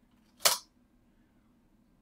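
A single sharp click from a computer keyboard key being struck, about half a second in, while a short comment is typed and posted.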